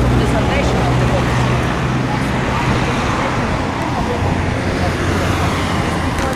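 City street traffic noise: a steady rumble of vehicles with a low engine hum, mixed with indistinct voices of people nearby.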